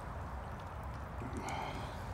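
Ducks swimming in a small pond: faint water sounds over a low steady rumble. A brief faint high call comes in about one and a half seconds in.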